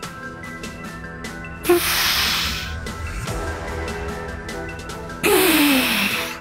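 Background music with a steady beat, broken twice by loud, forceful breaths of a lifter straining through a hard set of cable curls. The second breath ends in a falling groan.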